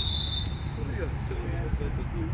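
Open-air background at a football pitch: faint distant shouts from players or spectators over a steady low rumble. A high steady whistle tone fades out in the first half-second.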